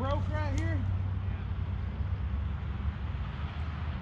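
ECHO CS450P gas chainsaw idling steadily, with a man's brief voiced sound in the first second.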